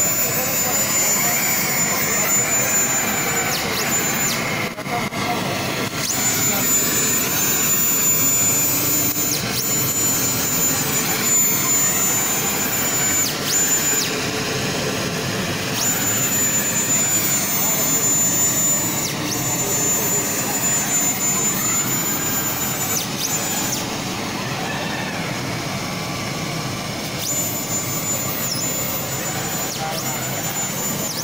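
Large laser cutting machine running with a steady loud rush of air from its blower, and a thin high whine that stops and starts every few seconds.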